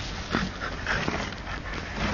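French bulldog attacking a cardboard box with her mouth: cardboard scraping and rustling, with a few sharp knocks and the dog's own noises.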